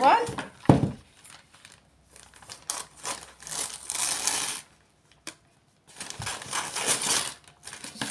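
Gift wrapping paper being handled and crinkled, in two stretches of rustling, after a single low thump about a second in.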